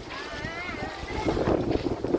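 Wind rumbling on the microphone, with faint voices of passers-by; one higher voice rises and falls briefly in the first second.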